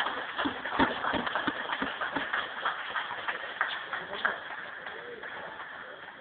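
Scattered hand clapping from a few spectators, echoing in a sports hall, with voices underneath; the claps are densest in the first couple of seconds and thin out and fade towards the end.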